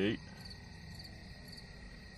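Crickets chirping in high, pulsing trills over a low steady hum.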